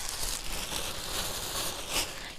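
Black plastic garbage bag rustling and crinkling as it is lifted, shaken out and drawn down over a foam box.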